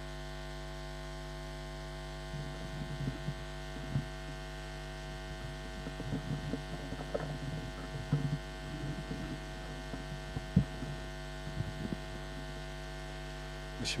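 Steady electrical mains hum in the sound system, with faint scattered shuffling and footstep sounds and a single sharp click about ten and a half seconds in.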